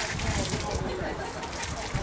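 Outdoor background noise: a steady rush of wind over the microphone, with faint voices in the distance.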